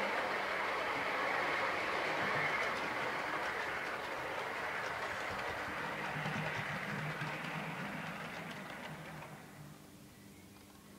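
Model Class 350 train running along the layout's track: a steady whirring, rumbling running noise from its motor and wheels on the rails. It fades away over the last few seconds as the train slows to a stop.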